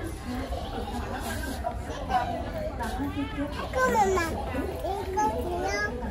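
Several voices talking at once, children among them, over a steady low background rumble.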